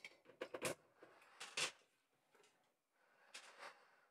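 Water splashing and copper pieces clattering as a gloved hand rummages in a water-filled quench pipe and lifts out a clump of freshly cast copper. The sounds come as several short, faint bursts, the loudest about half a second and a second and a half in.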